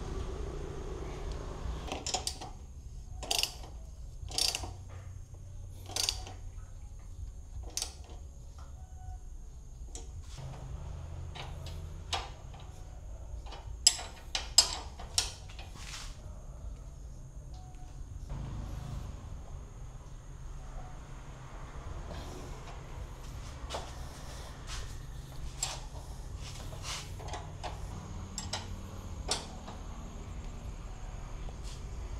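Scattered metallic clicks and clinks of bolts, hand tools and a steel motorcycle rear luggage rack being fitted, irregular, with the loudest few close together about halfway through, over a steady low background noise.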